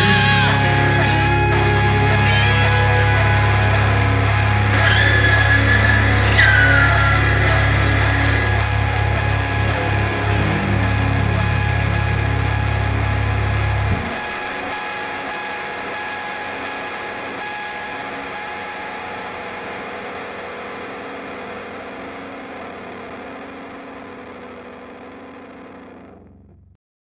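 A hard-rock band's closing chord: electric guitars and bass held and ringing, with a few sliding guitar notes a few seconds in. The low end cuts off about 14 seconds in, and the guitars' ring then fades out slowly.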